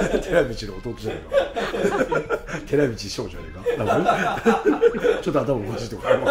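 Several men chuckling and laughing, with bits of talk mixed in.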